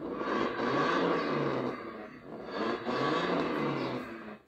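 Electric ride-on toy motorbike's built-in speaker playing its start-up engine sound effect, set off by switching on the power button. The recorded motorbike engine revs up and down twice.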